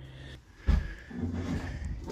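A single dull thump a little over half a second in, followed by a quieter low handling sound.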